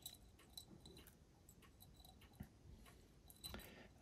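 Near silence, with faint scattered light clicks as small 3D-printed resin parts are picked out of a glass jar of isopropyl alcohol.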